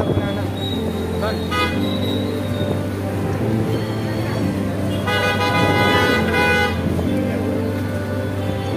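Vehicle horn honking in street traffic: a short toot about a second and a half in, then a long steady honk of nearly two seconds about five seconds in.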